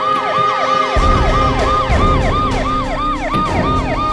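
Police vehicle siren sounding a fast, repeating falling wail, about four sweeps a second. A low rumble comes in about a second in.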